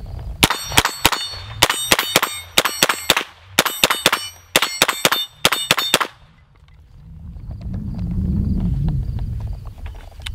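A Smith & Wesson M&P 15-22 .22 LR pistol fired fast, about twenty shots in quick strings of three or four, roughly five a second, over the first six seconds. Steel targets ring high and metallic with the hits. After the shooting stops there is a low rumble that swells near the end.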